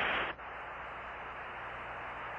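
Static hiss on a spacecraft air-to-ground radio link between transmissions. A louder hiss cuts off about a third of a second in, leaving a fainter steady hiss over a low hum.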